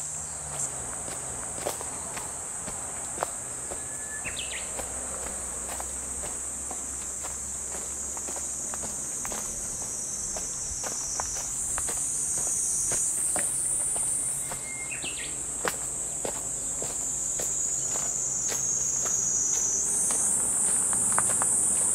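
Footsteps on a dirt trail strewn with leaf litter, under a steady high-pitched insect drone that shifts in pitch twice. A short rising chirp sounds twice, about four and fifteen seconds in.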